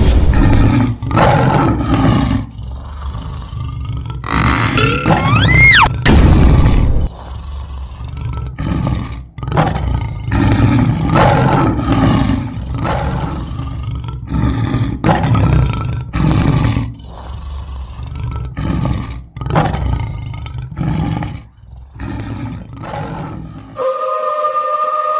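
Loud, lion-like roaring and growling, over and over in bursts of a second or two. A whistle-like rising glide comes about five seconds in.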